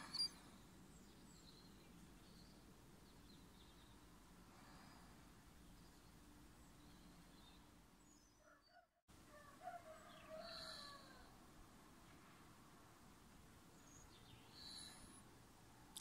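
Near silence: faint background noise that drops out completely for a moment just before nine seconds in, followed by a few faint chirps about ten seconds in and again near the end.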